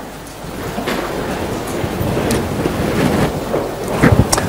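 A congregation getting to its feet: a dense rustle of clothing, shuffling and seat noise that builds up steadily.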